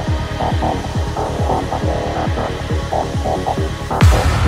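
Goa trance music in a stripped-down section: a kick drum falling in pitch on each beat, about two and a half beats a second, under a rolling bassline and short synth stabs, with little hi-hat or cymbal on top.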